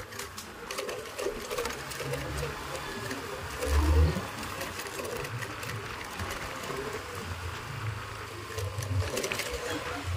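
Honda Vario 150 scooter's single-cylinder engine running at low revs with a steady mechanical chatter, along with tyre and wind noise as the scooter rolls slowly on a dirt track. There is a louder low thump about four seconds in.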